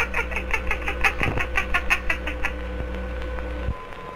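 A cartoon character's rapid, high-pitched staccato laugh, about seven short 'ha's a second, stopping a little past halfway; after that only the faint steady hum of an old film soundtrack.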